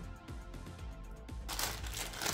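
Faint background music with a steady tone, joined about one and a half seconds in by a rustling, scraping handling noise as the car-stereo unit is moved about on the table.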